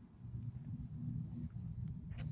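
Low steady rumbling background noise, with one faint click just before the end.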